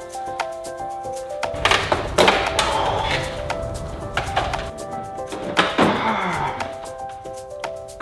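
Background music with held notes and a steady beat, over which the plastic tailgate trim panel and its clips knock and clack several times as they are pried and worked loose, in two clusters about 2 s and 6 s in.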